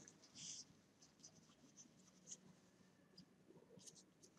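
Near silence: room tone, with a faint brief rustle about half a second in and a tiny tick a little after two seconds.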